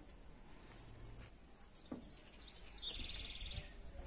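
A bird calling: a few short high chirps, then a quick trill of rapid notes lasting under a second, heard faintly.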